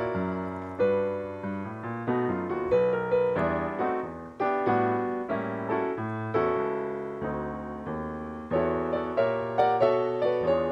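Piano playing a solo instrumental break of the song, chords struck one after another and left to ring and fade.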